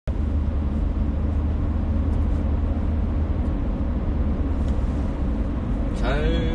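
Steady road and engine rumble heard inside a moving car's cabin on an expressway, heaviest in the deep bass.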